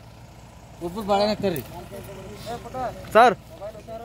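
Men's voices calling out in short bursts, with one brief loud shout about three seconds in, over a steady low hum.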